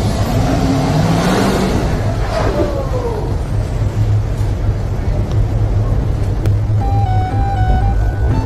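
Steady low vehicle rumble from the SUVs at the kerb, mixed with music. A swell of noise with sliding tones fills the first three seconds, and a simple melody of held notes comes in near the end.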